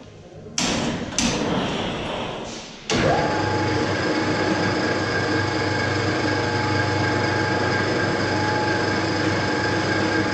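Two metallic knocks on steel plate, then a large angle grinder running steadily on a steel hull, a constant whine over a grinding hiss starting about three seconds in.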